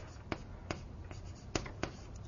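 Drawing on a lecture board: four short, sharp taps of the writing stroke, spread over two seconds, against quiet room tone.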